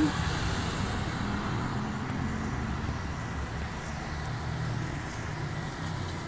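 A steady low rumble of distant road traffic.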